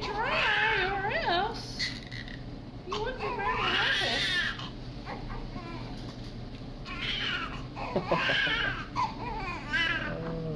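Newborn baby crying in three high, wavering bursts with short pauses between, each cry a few seconds long.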